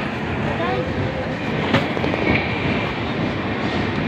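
Passenger train pulling slowly out of a station, heard from an open coach door: a steady rumble of the moving coach, with one sharp click a little before halfway and faint voices from the platform.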